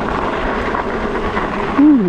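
Steady rush of riding noise, wind on the microphone and tyres rolling on a packed dirt path, as an e-bike is ridden at about 23 mph, its top speed. A voice starts speaking near the end.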